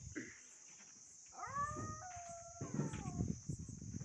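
A steady high drone of insects, with a drawn-out animal call of about two seconds starting a second and a half in. The call rises, holds, then breaks into a falling tone.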